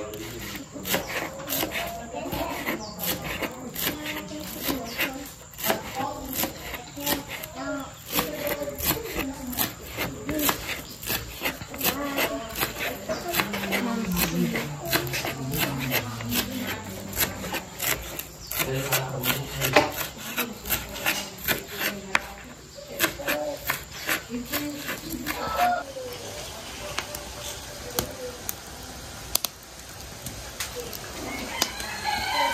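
Chef's knife chopping green onions on a plastic cutting board: a quick, even run of blade taps on the board, about two or three a second, which stops a few seconds before the end.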